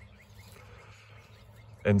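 Quiet outdoor background: a faint, even hiss with nothing distinct in it, until a man's voice comes in near the end.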